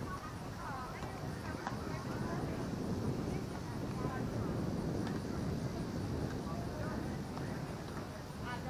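Distant voices of baseball players calling out across the field, heard faintly over a steady low rumbling outdoor noise that grows louder after the first second or two.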